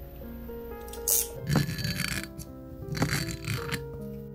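A whisky bottle's capsule seal being cut and torn off: a few short scraping, tearing sounds about a second in, around two seconds and again past three seconds. Background music plays throughout.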